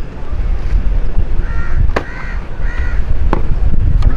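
Three short crow-like caws in quick succession, starting about a second and a half in, over a steady low rumble. Two sharp clicks fall in the middle of the calls.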